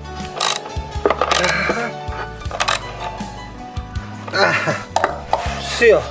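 Ratchet wrench clicking in a few short strokes in the first half as it drives a screw into a wooden board. A steady background of music runs underneath, and a voice speaks near the end.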